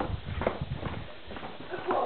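Footsteps of shoes on stone steps and paving, a few sharp footfalls, the first two about half a second apart and another near the end.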